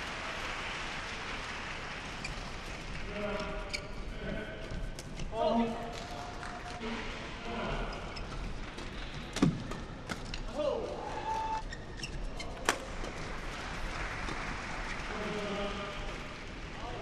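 Badminton rally in an indoor hall: rackets striking the shuttlecock with sharp cracks, two loudest hits about nine and a half and about thirteen seconds in. Short voices call out between strokes over a steady arena background.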